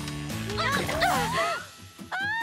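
Cartoon background music with a bass line stepping from note to note, a brief voice exclamation about half a second in, and a rising tone that slides up for about half a second.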